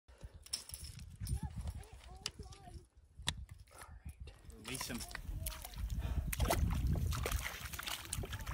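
Low voices talking over a steady low rumble, with scattered sharp clicks.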